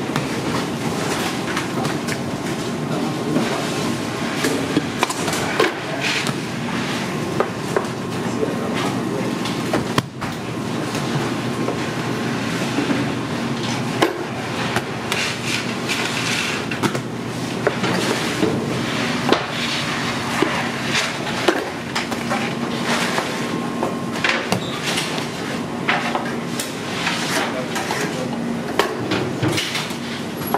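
Bakery dough being cut, weighed and worked by hand on a wooden bench: repeated knocks, thuds and clatters from the dough, knife and balance scale, over a steady low hum, with background voices.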